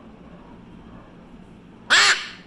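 A young blue-and-gold macaw gives one loud, harsh squawk near the end, after a quiet stretch.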